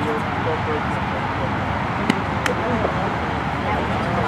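Distant players' voices calling on an outdoor field over a steady low background rumble, with two sharp clicks about two seconds in.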